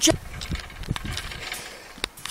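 Trampoline being bounced on: a few soft thumps of the mat with scattered clicks and rattles from the springs and frame.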